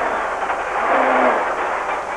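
A rally car driving at speed on a gravel stage, heard from on board: a steady rushing of tyres on gravel, wind and engine noise.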